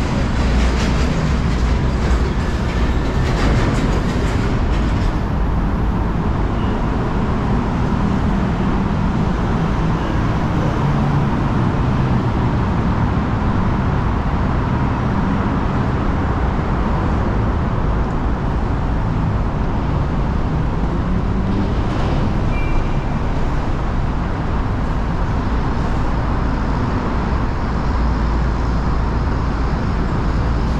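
Steady city traffic noise, a dense low rumble with no breaks, from the roads on and beneath the elevated decks. Extra hiss rides on top for the first five seconds or so.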